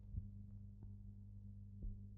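A low, steady soundtrack hum in a near-silent gap, with two faint dull thumps, one just after the start and one near the end.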